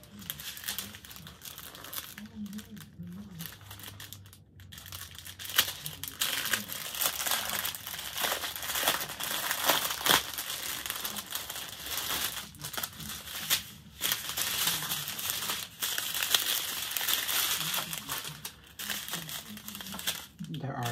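Plastic packaging crinkling and rustling as it is handled: a diamond painting canvas's plastic film and small zip-lock bags of drills. The crinkling is lighter for the first few seconds, then becomes dense and crackly from about five seconds in.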